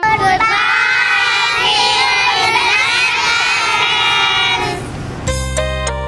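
A group of children's voices calling out together for about five seconds, starting suddenly, then keyboard music comes back in near the end.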